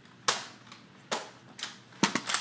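Three sharp clacks. The loudest comes about a quarter-second in, the next about a second in, and a smaller one follows half a second later.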